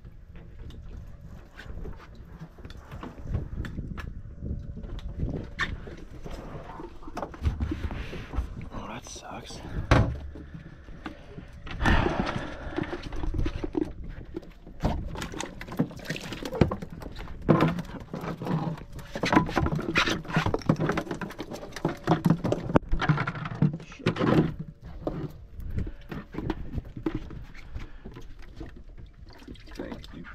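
Indistinct voices mixed with knocks and clatter from handling gear and buckets aboard a small boat, with one sharp knock about ten seconds in.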